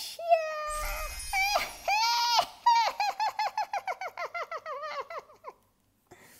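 A woman's high-pitched witch voice: a wavering drawn-out call, then a rapid cackling laugh of about five short falling notes a second that stops shortly before the end.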